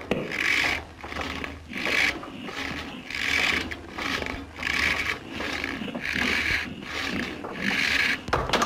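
Hand saw rasping through wood in steady back-and-forth strokes, about one every 0.7 s, the strokes alternating stronger and weaker.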